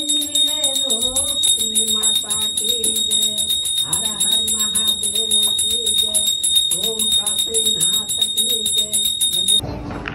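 Small brass puja hand bell rung in rapid, even strokes during an aarti, with a voice singing the devotional aarti melody over it. Both stop abruptly just before the end.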